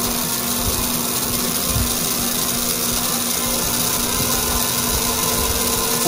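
Aurora Slim Line slot car chassis motor running on bench power, a steady whirring hum with its gears turning. It is the chassis's first run, its crown gear just ground down for clearance, and it is still breaking in.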